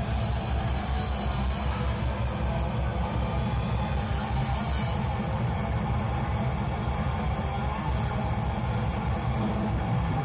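Heavy metal band playing live: distorted electric guitars, bass guitar and drum kit in a dense, continuous wall of sound with a fast pulsing low end.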